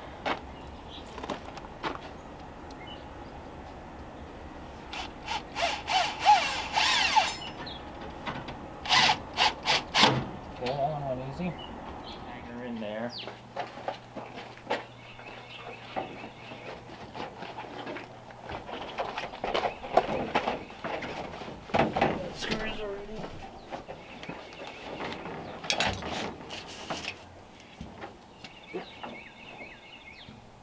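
Hand-tool work on car door panels: several short runs of a cordless drill, and knocks and rattles as the panels are handled and fitted, busiest in the first third and again in the last third.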